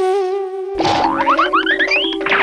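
Comic background music: a held, wavering instrumental note. About a second in it gives way to a cartoon sound effect, a quick string of rising 'boing' glides that climb higher step by step.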